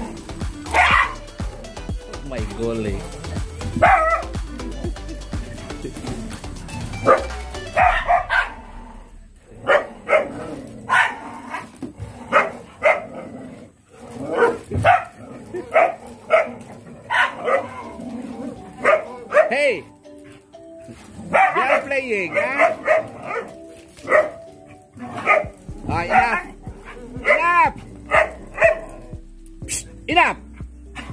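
Several dogs barking and yipping, short sharp barks that come thick and fast from about eight seconds in, some overlapping. Background music plays underneath at the start and again near the end.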